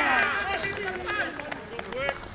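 Several spectators shouting and yelling excitedly, their voices overlapping. One loud, long shout trails off just after the start, followed by shorter calls.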